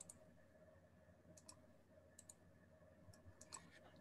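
Near silence with a few faint computer mouse clicks, several coming in quick pairs, over a faint steady hum.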